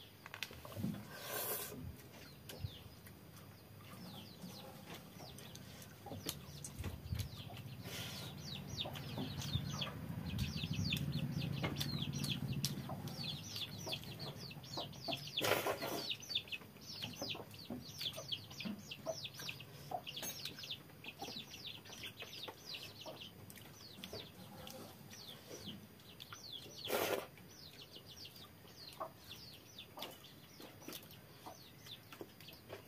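Chickens clucking, with a busy run of short high chirps from about eight seconds on. Close over them come a few loud brief mouth sounds as a man drinks the fermented rice water of panta bhat from a steel bowl and eats with his fingers, the loudest about halfway through and another near the end.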